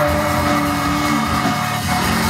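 Rock band playing live: electric guitars holding sustained notes over bass and drum kit.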